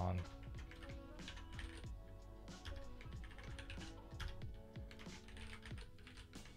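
Typing on a computer keyboard: a quick, uneven run of keystrokes while a line of code is written.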